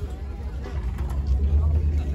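Low, uneven rumble of wind buffeting the microphone, swelling about one and a half seconds in, over faint chatter of people nearby.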